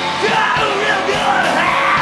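Live rock band playing electric guitars and drums, with a vocal coming in just after the start.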